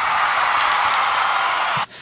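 A long, loud breathy sigh: a steady exhale lasting nearly two seconds that stops abruptly.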